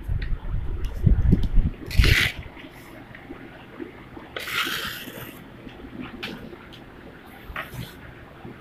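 A sheet of paper being handled and folded by hand on a table. There are low bumps and knocks of hands on the table in the first two seconds, a short rustle about two seconds in, and a longer paper rustle around the middle.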